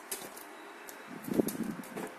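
Hands handling and opening a small cardboard box: faint rubbing with a few light clicks and taps, and a brief low sound a little past halfway.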